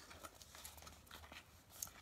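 Near silence with a few faint, short clicks as a small cardboard box of contact lenses is handled in the hands.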